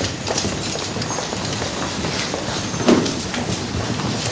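Footsteps and irregular knocks and clatter over the general noise of a busy hospital casualty department.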